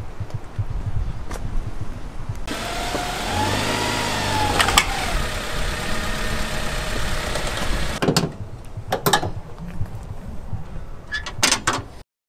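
Honda Prelude's four-cylinder engine running at low speed with a short rise and fall in revs near the middle, as the car is driven onto wooden blocks. A few sharp knocks come in the last few seconds.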